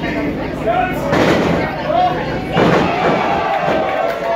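Wrestling ring floor taking two heavy body impacts about a second and a half apart, the second the loudest, each ringing on briefly, over shouting crowd voices.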